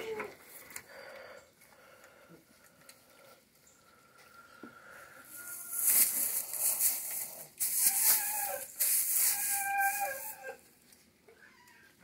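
Dry hay rustling and crackling in bursts as it is handled in the second half, with a few short calls from farm animals mixed in.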